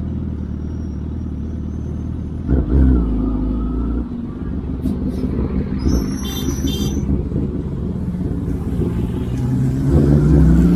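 Sportbike engine running at low speed in slow traffic, blipped up briefly about two and a half seconds in and rising again near the end. A brief high, pulsing chirp sounds about six seconds in.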